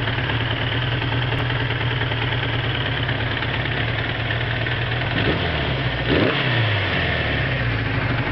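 1981 Suzuki GS550's air-cooled inline four-cylinder engine running steadily on its first run after five years stored, freshly rebuilt carbs and top end. The engine speed lifts briefly twice, about five and six seconds in, then settles back to idle.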